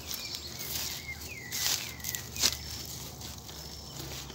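Dry leaves and plant stems rustling and brushing as someone moves in among the plants, with a few brief louder brushes around the middle and a faint bird chirping behind.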